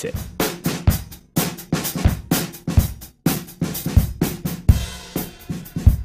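Programmed drum loop of kick, snare and hi-hats, playing through the Softube Console 1's drive saturation. Its tone shifts between brighter and smoother as the saturation's character control is turned.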